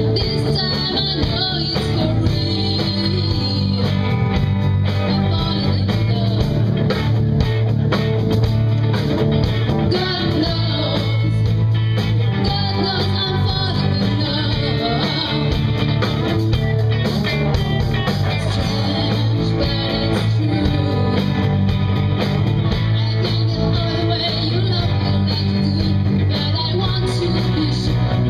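Rock band playing live: two electric guitars, bass guitar and drum kit, with a woman singing.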